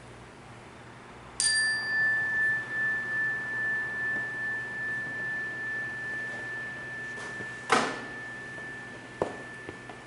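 A small meditation bell struck once about a second and a half in, ringing one high tone that wavers as it slowly fades. A sharp knock comes near eight seconds, and two lighter clicks follow.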